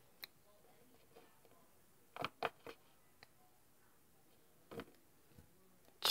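Near silence broken by a few faint, short clicks and taps, scattered a second or two apart.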